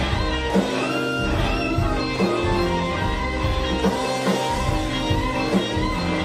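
Live blues-rock band: an electric guitar plays lead lines with string bends over steady drums and low-end accompaniment.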